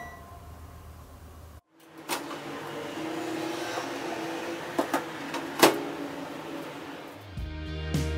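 A plastic food container handled inside an open microwave oven: a few knocks and clunks against the oven over a low steady hum. Background music comes in near the end.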